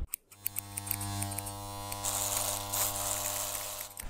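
Electric hair clippers running with a steady low buzz that starts just after the beginning and stops just before the end. A brighter hiss joins in about halfway through.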